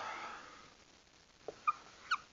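A few short squeaks of a dry-erase marker writing on a whiteboard, near the end.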